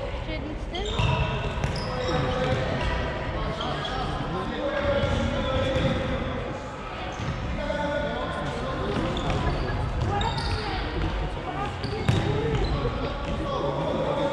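Youth futsal game in a large sports hall: the ball being kicked and knocking off the wooden floor, under steady shouting and calling from players and spectators. A sharp knock stands out about twelve seconds in.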